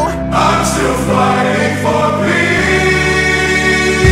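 Nightcore rock cover song, sped up and pitched up, in a quieter stretch. Layered singing rides over long held chords, with a brief dip in sound just after the start.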